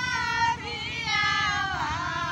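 Women's voices singing a Chhath Puja devotional folk song together, in high, drawn-out notes that slide in pitch.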